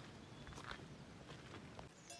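Very quiet outdoor background: a faint low rumble with a few soft scuffs like steps on grass.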